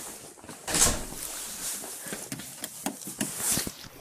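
A door being worked, with a loud rush of noise about a second in, then scattered clicks and knocks and a smaller swell of noise near the end.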